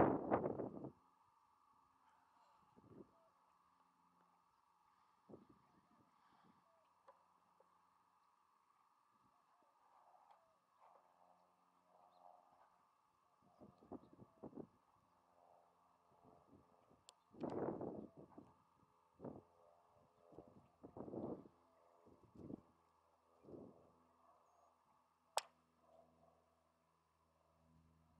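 Quiet outdoor background with a faint steady hum. A laugh trails off at the start, a few soft, brief noises come and go, and one sharp click sounds near the end.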